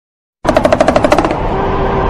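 Intro sting over a channel logo: after a moment of silence, a rapid run of pitched hits, about a dozen a second for under a second, runs into a sustained sound with a steady held tone.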